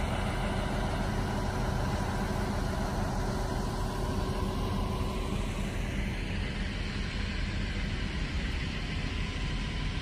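A motor vehicle engine idling with a steady low rumble that holds at an even level, under a wash of outdoor noise.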